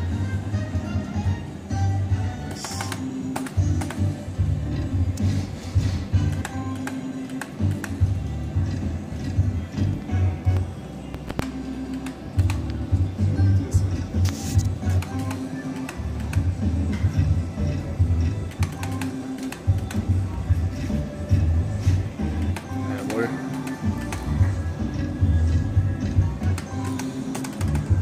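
Video slot machine playing its looping free-games music with a pulsing bass rhythm, dotted with short clicks and electronic effects as the reels spin and stop from one free spin to the next.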